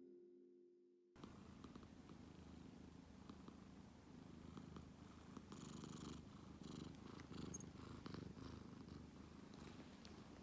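A domestic cat purring steadily and faintly, close up, starting about a second in as the last piano notes fade away.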